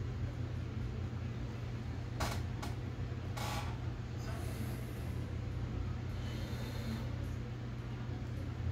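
Steady low room hum, with a few brief clicks a little over two and three seconds in and soft rustles later as thread and weed-guard material are handled at a fly-tying vise.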